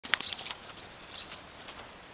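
Shetland pony walking on a sand arena, its hoof steps on the soft ground faint and spaced through the clip. A brief sharp sound comes just after the start.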